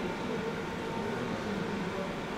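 Steady, even background hum of a large indoor hall: room tone with a constant low machine or ventilation drone and no distinct events.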